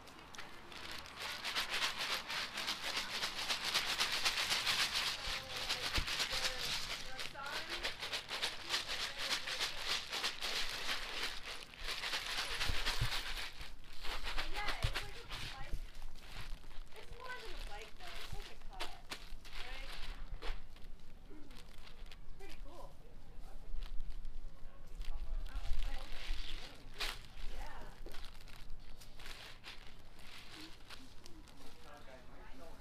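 Plastic zip-top bag of ice and rock salt, with a small bag of milk mix inside, being shaken and handled through a towel to freeze it into ice cream: a dense crinkling and rattling, heaviest in the first ten seconds or so, then more broken up.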